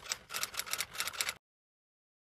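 Typewriter key-click sound effect, a quick run of clicks at about seven a second. It stops abruptly about one and a half seconds in, giving way to dead digital silence.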